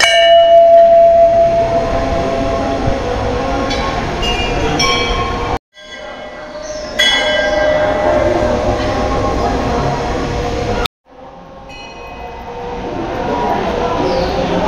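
Metal temple bells ringing: struck several times, each strike ringing on at several pitches over a steady background noise. The sound cuts out abruptly twice.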